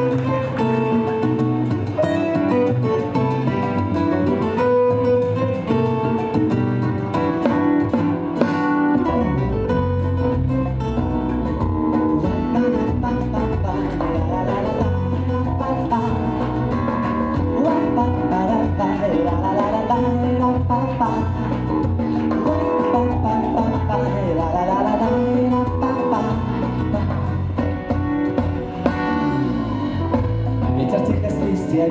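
Intro of a song played live: guitar music, with guitar parts from a pre-recorded backing track, and a bass line coming in about nine seconds in.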